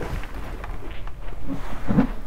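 Rustling and light knocks as a person in foul-weather sailing gear shifts and climbs out of a seat, over a steady low rumble. A short low voice sound comes near the end.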